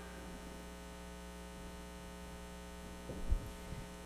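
Steady electrical mains hum in a microphone feed, with a brief low thud a little after three seconds as the lectern microphone is handled.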